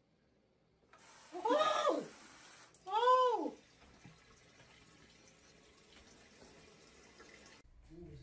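Water jet of a toilet bidet attachment spraying with a steady hiss, starting suddenly about a second in and cutting off sharply near the end. Over it, a woman gives two high-pitched cries that rise and fall, about one and a half and three seconds in.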